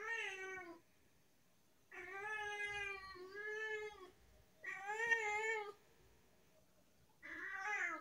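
A young tabby cat meowing over and over: five drawn-out meows with short pauses between them, two of them run close together in the middle.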